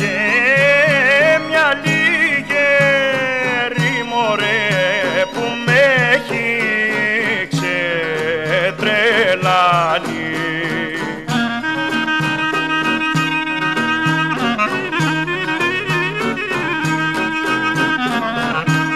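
Instrumental break of a Greek folk song: a clarinet plays a heavily ornamented melody, bending and trilling in pitch, over a steady rhythmic accompaniment. About eleven seconds in, the melody turns to longer held notes.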